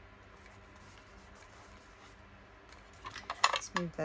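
Quiet room tone for about three seconds, then a quick run of sharp clicks and knocks as stamping supplies (an ink pad and a box of wooden stamps) are handled and set down on a cutting mat, one knock much louder than the others.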